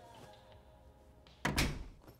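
An interior door being shut, closing with one sudden loud thud about one and a half seconds in.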